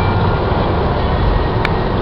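Steady road and tyre rumble with engine drone, heard from inside a car's cabin at highway speed. A brief tap sounds about one and a half seconds in.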